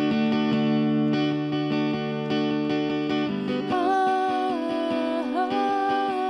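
Acoustic guitar strummed in slow, sustained chords; a little past halfway a woman's voice comes in singing long held notes over it.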